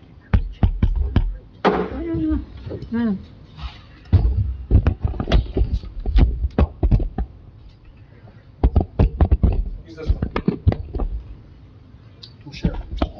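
Microphone handling noise: a string of knocks, bumps and clicks picked up through the microphone while it is being fiddled with over a battery problem, with a short voiced sound about two seconds in.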